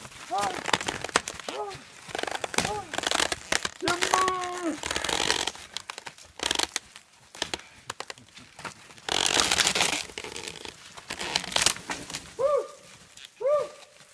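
A dead tree coming down after being rocked at its resonant frequency: wood cracking and branches snapping and crackling, with a longer noisy crash about nine seconds in. People shout and whoop several times over it.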